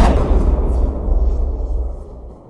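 Deep rumbling tail of a cinematic boom sound effect on an animated logo, steadily dying away.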